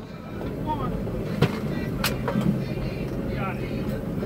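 Boat engine idling with a steady low hum, with two sharp knocks about a second and a half and two seconds in, and faint voices in the background.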